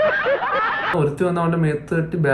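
A man laughing for about the first second, then a man talking.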